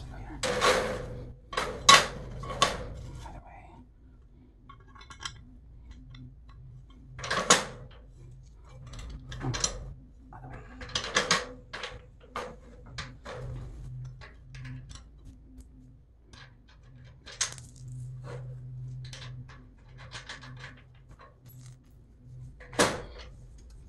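Metal bracket plates and bolts clinking and clanking against a metal cargo-rack frame as they are fitted by hand: irregular sharp metallic clicks, loudest in the first few seconds and again about seven and eleven seconds in.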